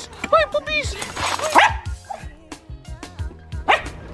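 Small dogs yapping excitedly: a quick run of short, high barks in the first second, then a few scattered ones.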